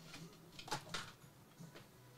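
Quiet room tone with two faint, short clicks, about two-thirds of a second and a second in.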